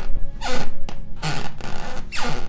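A creaking floor sound effect: repeated rasping creaks, about one a second, over a low background music drone.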